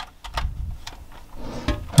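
Light plastic clicks and knocks from a hand working the moving parts of a Lego Aston Martin DB5 model, trying a gadget mechanism that isn't working; a sharper click comes right at the end.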